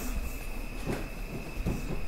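Quiet room tone through the hall's sound system: a low hiss with a faint, steady high-pitched whine, and a couple of soft, faint noises.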